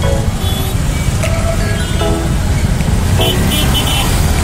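Auto-rickshaw engine running with a steady low rumble as it moves through traffic, with music playing over it.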